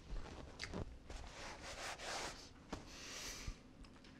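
Biting into a grilled, toasted ciabatta panini and chewing it. The crisp bread crunches in two spells, one around the middle and one near the end.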